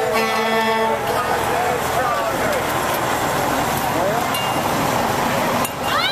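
Semi-truck air horn blaring one steady note that cuts off about a second in, followed by the voices of a marching crowd.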